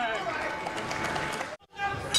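Arena crowd noise with mixed voices as a boxing round ends. It cuts off suddenly about one and a half seconds in at an edit.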